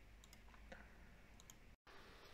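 Near silence with a few faint, short clicks spread through it, and a brief dead dropout near the end.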